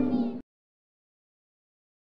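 Harp strings ringing, with children's voices, cut off abruptly less than half a second in; the rest is complete silence.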